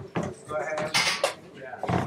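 Indistinct voices in a room with a clatter of small knocks and clinks, and a brief hissing burst about a second in.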